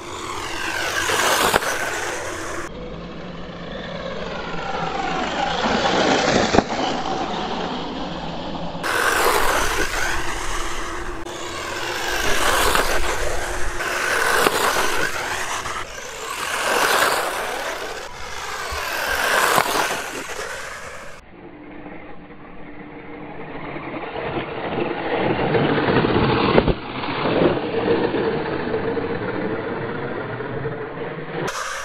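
WLToys 124019 RC buggy's electric motor whining as the buggy drives back and forth past the listener. Each pass is a whine that rises and then falls in pitch, coming about every two to three seconds, with slower, softer passes near the end.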